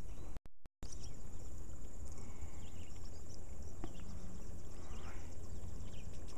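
Insects chirring steadily in a high, rapid pulse over a low rumble on the microphone. The sound cuts out completely for a moment about half a second in.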